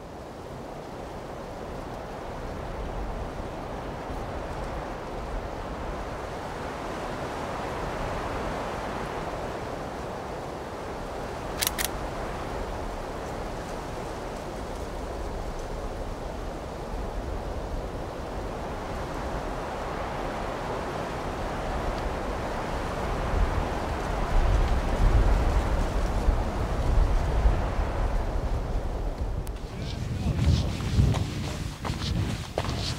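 Steady rush of wind over open mountain ground. In the last several seconds gusts buffet the microphone in low rumbles. A brief, sharp double click comes just before halfway.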